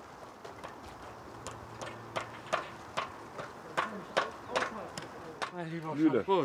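A row of sharp knocks, about two to three a second and getting louder, from work at the foot of a newly raised pole topped with a fir tree. Faint voices come near the end.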